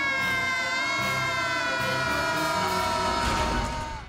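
Several boys screaming together in one long held scream that swoops up at the start and then slowly falls in pitch before fading out, over background music with a low pulsing beat.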